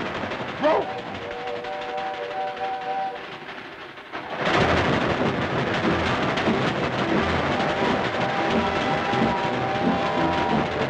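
Cartoon sound effects of a steam locomotive: a short sharp sound about half a second in, then a steam whistle held as a pulsing chord of several tones. About four and a half seconds in, a loud rushing, rhythmic running-train noise starts suddenly, with steady whistle-like tones again near the end.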